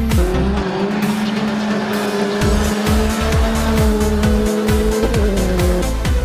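Background music with a steady beat and long held notes.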